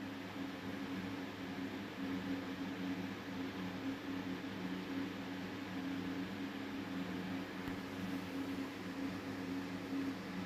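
Room tone: a steady low hum with a faint hiss running evenly throughout.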